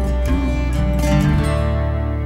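Acoustic guitar, harp guitar and violin playing together, with plucked notes and strums. Past the middle they settle on one held chord that rings on and starts to fade, like the last chord of a song.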